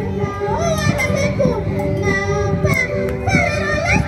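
Andean carnival music: high women's voices singing a melody together over a steady hand-drum beat.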